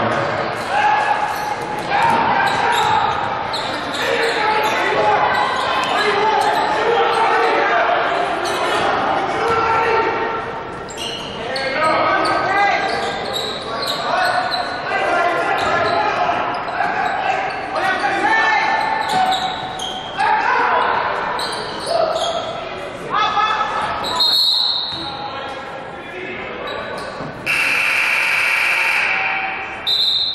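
Live basketball game sound in a large gym: a ball dribbling and players and spectators calling out, with hall echo. A short high whistle blast about 24 s in, then a steady horn-like buzzer for about two seconds near the end as play stops for free throws.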